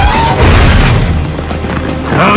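Cartoon sound effect of a heavy boom as the giant muscleman lands from a height, a deep rumble that dies away over about a second and a half, with dramatic background music.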